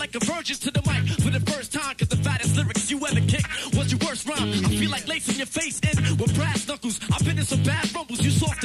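Hip-hop beat with a rapper rapping over it.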